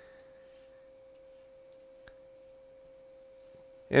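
Quiet room tone with a faint, steady single-pitched hum that never changes, and one soft click about two seconds in.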